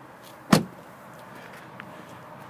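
Driver's door of a 2007 BMW 335xi being shut: one solid thud about half a second in.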